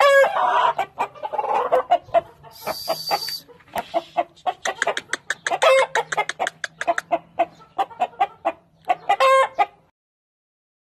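Indian game chickens clucking in quick runs of short clucks, with longer calls in the first two seconds. A brief hiss comes about three seconds in.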